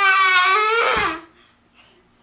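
A toddler's loud, high-pitched shriek, held as one long cry that breaks off just over a second in.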